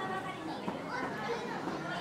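Indistinct chatter of a crowd of visitors, with children's voices mixed in.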